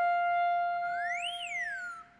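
An edited-in comic sound effect: a held electronic note, with a whistle-like tone that slides up and back down in the second half. It cuts off abruptly.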